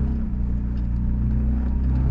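Off-road four-wheel-drive vehicle's engine running steadily at low speed as it crawls over a rocky trail, heard from inside the cabin as a low, even drone.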